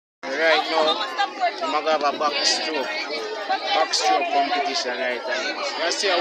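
Speech: a man talking continuously, with chattering voices.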